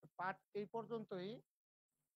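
Only speech: a man's voice saying a few short words in the first second and a half.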